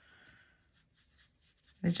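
A brief faint scratch of a paintbrush in the first half-second, then near quiet; a woman starts speaking near the end.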